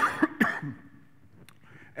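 A man coughing, three quick harsh coughs in the first second, as if clearing his throat.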